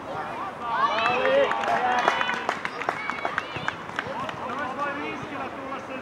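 Several voices shouting and calling across a youth football pitch, with a quick run of sharp clicks about two to four seconds in.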